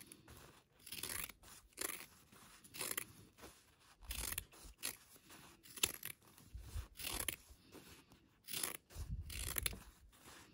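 Straight fabric scissors snipping through the seam allowance of sewn cotton fabric, a short crisp cut about once a second, as the seam allowances are trimmed.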